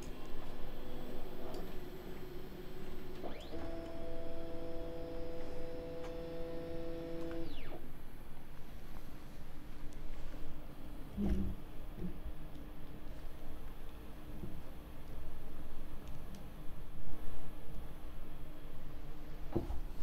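Panospace 3D printer's stepper motor running for about four seconds, a steady whine that ramps up at the start and down at the end as the printer moves into position for loading filament. A single knock about eleven seconds in, then a faint steady hum.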